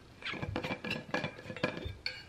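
A plastic straw clicking and clinking against a reusable bubble tea cup as it is handled and drawn out, a quick series of small taps and clinks.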